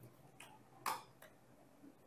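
Three faint, sharp clicks of computer keys being pressed, the middle one loudest.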